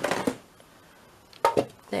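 A paper trimmer set down on a wooden desk with a sharp knock about one and a half seconds in, followed by a brief rattle of handling.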